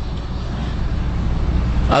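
Steady background noise with a strong low hum, slowly growing louder, in a break between spoken phrases. A man's voice comes back in right at the end.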